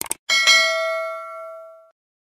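Subscribe-button notification sound effect: a quick click or two, then a bright bell ding that rings out and fades away over about a second and a half.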